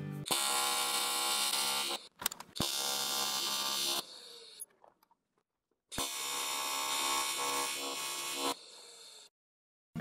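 AC TIG welding arc on aluminum buzzing steadily in three separate passes of about one and a half to two and a half seconds each, every one starting and stopping sharply as the arc is struck and broken. The second and third passes trail off into a brief fainter hiss.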